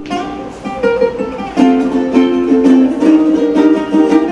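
Small handmade wooden ukuleles strummed together, playing a run of chords with a steady series of strums.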